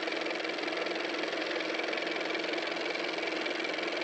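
A machine running steadily with a fast, even rattle over a constant hum, starting abruptly.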